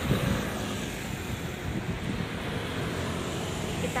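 Steady road traffic noise from cars passing on a city street, mixed with wind noise on the microphone.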